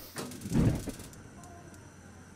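A gas stove burner lighting: a click, then a low whoosh as the flame catches about half a second in, settling into a faint steady hiss.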